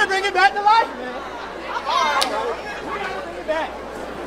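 A man's voice calling out for about the first second, then a crowd chattering and calling out.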